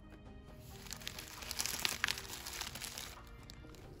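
Plastic zip-top bag crinkling and rustling as it is handled and tipped to pour out powder, building to its loudest about halfway through and then dying away, over faint background music.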